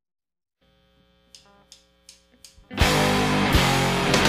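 Silence, then faint amplifier hum and four quick evenly spaced count-in clicks, like drumsticks tapped together. A little under three seconds in, a garage-punk rock band comes in loud with distorted electric guitars and drums.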